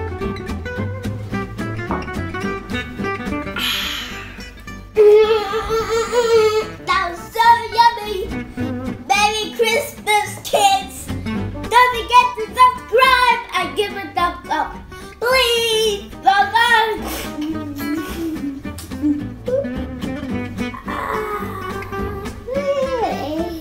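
Instrumental background music with guitar. From about five seconds in, a melody with bending, wavering pitch comes in over the backing.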